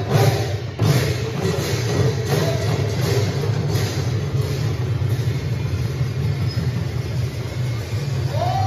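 A large ensemble of Assamese khol drums played together: dense, loud drumming with a low rolling body. There are a few sharp strokes in the first second, then a steady, thick texture.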